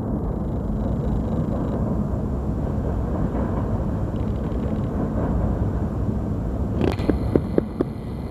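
Distant doublestack freight train rolling across a steel truss bridge: a steady low rumble. A few sharp clicks come near the end.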